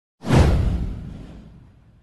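A single whoosh sound effect with a deep boom under it, swelling suddenly just after the start and dying away over about a second and a half.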